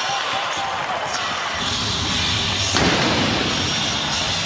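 Arena crowd noise after a home goal, with a single blank shot from a replica field cannon about three seconds in, fired to celebrate the goal.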